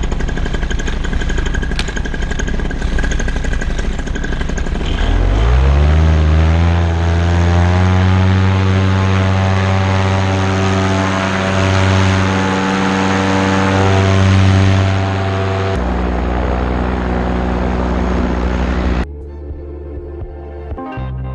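Paramotor engine and propeller running at low throttle, then throttled up about five seconds in, its pitch rising to a steady full-power drone for the foot-launch takeoff run. The sound shifts slightly near the end and is cut off suddenly just before it ends.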